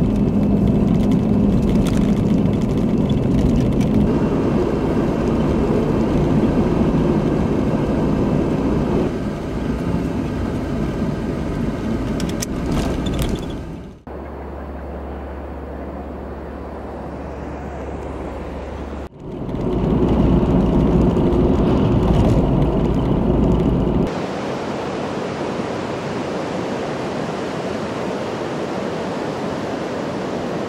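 Car driving, heard from inside the cabin: steady engine and road noise. About 14 seconds in it cuts abruptly to a quieter low hum, then a louder rush returns for a few seconds, and from about 24 seconds in there is the steady wash of ocean surf.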